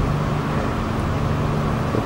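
Steady low hum of running machinery over a faint even background noise.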